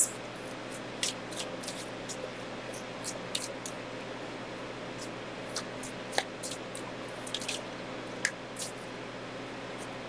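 Oracle cards being shuffled by hand: irregular light clicks and slides of card stock against card, over a faint steady room hum.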